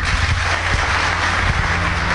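Audience applauding, a dense even patter of many hands, over a steady low hum.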